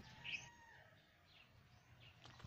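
Near silence, with a faint short bird chirp just after the start and a few fainter traces later.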